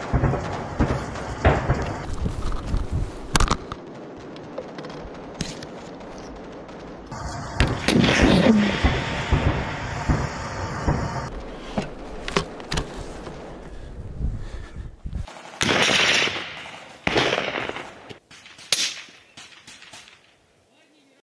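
Battlefield gunfire and explosions: a string of sharp bangs, some with short rushing tails, with a denser stretch of noise in the middle and two loud blasts near the end.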